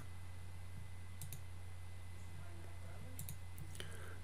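Computer mouse clicking a few times, a pair of clicks about a second in and a few more near the end, over a steady low hum.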